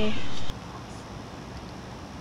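A child's narrating voice ends with a falling pitch in the first half-second, then only faint, steady background hiss follows, with no distinct bird calls.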